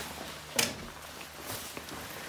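A thick, bulky jacket rustling as it is swung over the shoulders and pulled on, with a sharp click about half a second in and a softer one near the end.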